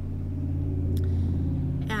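Car engine running, heard inside the cabin as a steady low hum that swells slightly in the middle.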